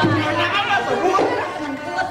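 Several people talking and calling out over one another. The music that was playing stops just after the start.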